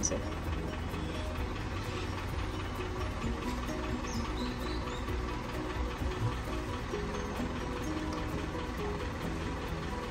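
Background music with held notes that change in steps.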